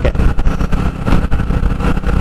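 Motorcycle running along a wet road with wind buffeting the microphone, a heavy, uneven low rumble.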